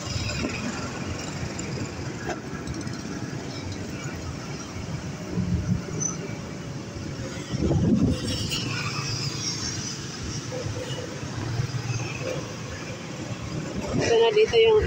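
Motor scooter riding through city traffic: a steady engine and road rumble, with other motorcycles running close by. A brief louder swell comes about eight seconds in.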